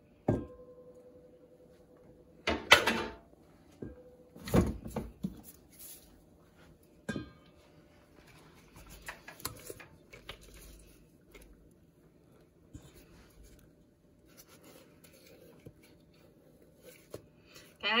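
Several sharp knocks and clatters of kitchenware, the first ringing briefly, then softer scraping of a spatula as soft ice cream is scraped out of a KitchenAid ice cream maker's freezer bowl into a stainless steel mixing bowl.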